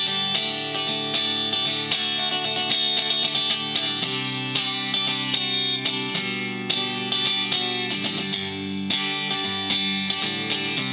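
Electric guitar with its pickup coil-split to a single-coil sound, played through an Orange Thunderverb 50 tube amp head on its clean channel A setting: chords and notes ring on, changing every second or so.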